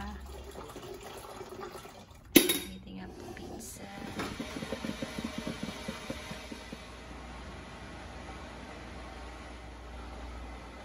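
A drip coffee maker: a single loud clack about two and a half seconds in as its lid is shut, then the machine brewing, a steady hiss with irregular gurgling as hot water drips through into the glass carafe.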